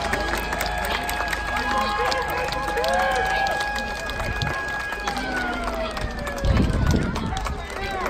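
Ballpark siren sounding the end of the game: one steady pitched wail that, from about five seconds in, winds down in a long falling glide. Players' voices are heard over it, and there are a few low bumps near the end.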